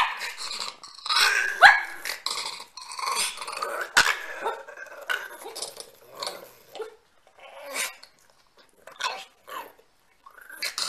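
A pug barking and growling in short, irregular bursts, busiest for the first seven seconds or so and then only now and then.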